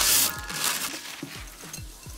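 Parchment paper crinkling and small hard toffee bits rattling into a glass bowl of cookie dough, loudest in the first half second, then quieter. Light background music plays underneath.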